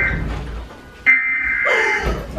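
Electronic alert chime from a TV emergency broadcast: a bright tone that starts suddenly about a second in and fades over most of a second, repeating the one just before it, over a low rumble. A crying voice near the end.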